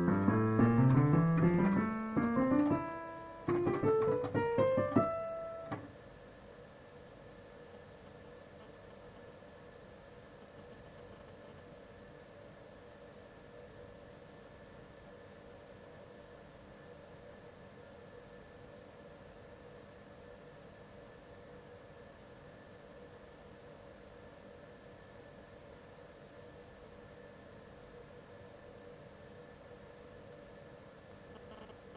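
Digital piano playing two quick runs of notes that climb steadily in pitch. The first runs for about three seconds and the second ends about six seconds in. After that there is only a faint steady hum and hiss.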